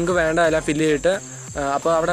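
A man talking in Malayalam, pausing briefly partway through, over a steady high-pitched whine.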